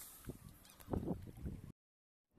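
Wind buffeting the microphone in irregular low gusts, the strongest about a second in; the sound cuts off abruptly shortly before the end.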